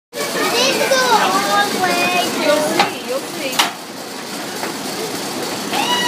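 Children's voices chattering and calling out excitedly, with two sharp clacks a little before and after the middle, and a long falling call near the end.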